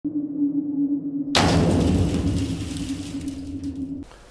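Produced intro sound effect under a channel title card: a steady low tone, then a sudden loud hit about a second and a half in that dies away slowly while the tone carries on.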